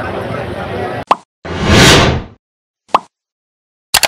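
About a second of crowd chatter and street noise, then a cut to the sound effects of a YouTube subscribe end-screen animation: a sharp pop, a loud whoosh that swells and fades, and a single click about three seconds in, with another click at the very end.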